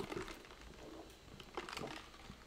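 Faint scattered clicks and small handling sounds over quiet room tone.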